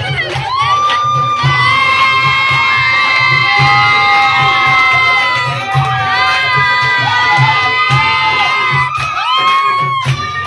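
A group of people cheering and shouting with long drawn-out whoops while dancing, over dance music with a steady bass beat about twice a second.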